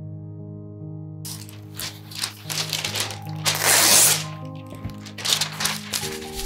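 Parchment paper rustling and crinkling as it is handled and smoothed onto a metal baking tray, beginning a little over a second in, with a louder drawn-out rasp about four seconds in. Soft piano music plays underneath.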